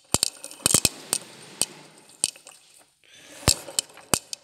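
A gear on its ball bearing in an MTZ tractor gearbox spun by hand, giving a rough whirring with sharp irregular clicks and clinks through it. This bearing and gear are where the transmission's racket ("грохот") was found to come from.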